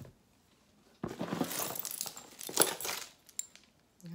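Costume jewelry dropped and clattering: a sudden rattle of many small hard pieces striking each other and a surface, starting about a second in and lasting about two seconds.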